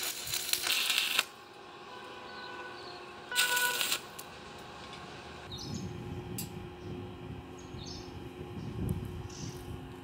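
Stick arc welding on a stainless steel railing post: two short bursts of arc crackle, about a second at the start and another briefly around three and a half seconds in, as tack welds.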